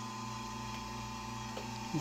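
Marine air-conditioning unit running in a boat's engine room: a steady, even hum with a few constant tones.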